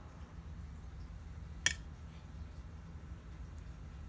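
Quiet kitchen handling as avocado is laid onto bean tostadas: a low steady hum under faint soft handling, with a single light utensil click against a plate about a second and a half in.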